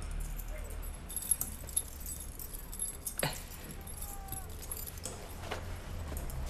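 Metal keys jangling and clinking as a bunch is handed round among several people, with a brief falling squeak about three seconds in.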